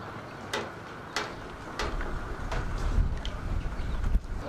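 A few sharp clicks, about four spaced under a second apart, over a low rumble that builds in the second half.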